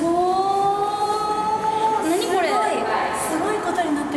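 A woman's voice drawing out a long exclamation on a held, slowly rising note, then quick up-and-down swoops of pitch from voices about halfway through, in a large domed hall.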